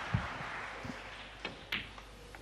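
Audience applause for the century break dying away to a quiet hall, with a soft low thump just after the start and a few faint knocks.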